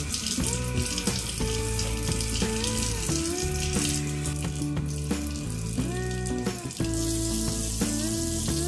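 Tap water running into a stainless steel sink and draining, under background music with a gliding melody and steady bass notes.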